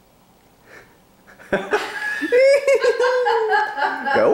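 A woman laughing, starting suddenly about a second and a half in after a quiet start.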